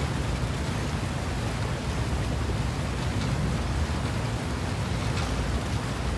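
Steady rushing noise of wind and water on the open deck of a moving boat, with a low rumble underneath.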